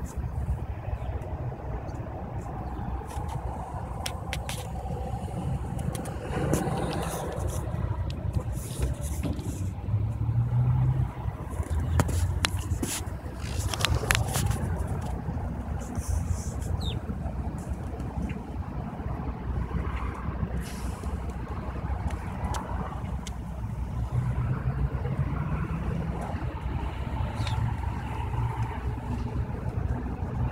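Steady low rumble of motor vehicles and traffic, with scattered short clicks and knocks.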